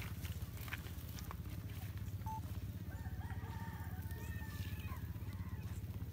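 A rooster crowing once, a single drawn-out call starting about three seconds in and lasting about two seconds, heard faintly over a steady low rumble.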